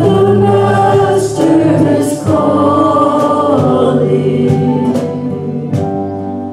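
Church praise band playing and singing a gospel hymn: voices singing together in long held notes over electric keyboard, with a steady beat of about one stroke a second.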